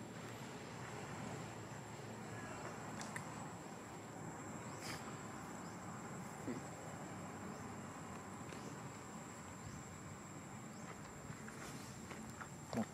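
Insects outdoors making a steady, thin, high-pitched drone against a faint background hiss, with a few faint ticks.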